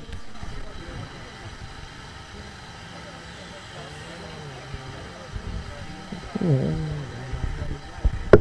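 Faint distant voices over a low, steady background hum, with one slightly louder stretch of voice about six and a half seconds in.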